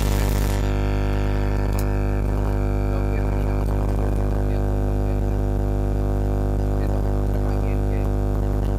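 A loud, steady droning buzz with a deep hum underneath and many fixed overtones. It holds one unchanging pitch throughout and all but buries the voice at the microphone.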